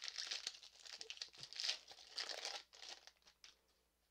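Foil Pokémon booster pack wrapper crinkling as it is torn open, a run of rustles that dies away about three seconds in.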